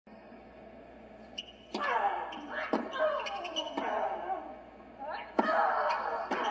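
Tennis ball struck back and forth in a rally, about one shot a second from just under two seconds in, each racket strike followed by a player's loud falling grunt.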